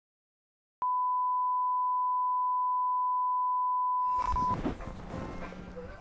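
A single steady electronic beep, one pure unchanging tone, starts about a second in and holds for about three and a half seconds before cutting off. Under its end, muffled background noise fades in.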